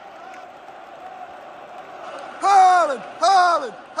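Low stadium crowd murmur, then a man shouting twice near the end, each a loud call that falls in pitch.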